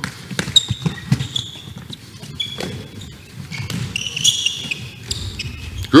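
A handball passing drill on a sports-hall court: the ball knocking into hands and bouncing on the floor, with short squeaks of players' shoes on the court surface.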